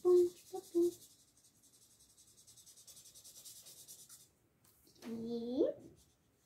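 Felt-tip marker scribbling back and forth on paper while colouring in, a faint fast even run of strokes that stops about four seconds in. A child's voice sings a few short syllables at the start and makes a short rising hum near the end.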